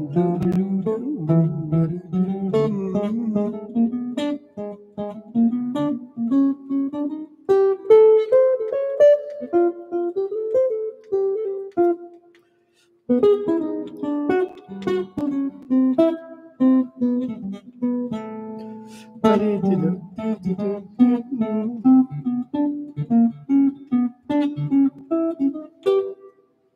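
Gibson hollow-body archtop guitar played through an amplifier: a jazz rhythm figure of short riffs and chords, with a brief pause a little past halfway.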